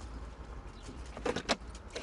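Low, steady rumble of a car driving, with two short sharp sounds about one and a half seconds in.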